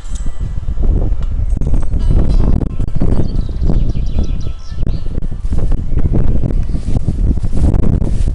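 Wind buffeting the camera microphone: a loud, uneven low rumble that surges and dips.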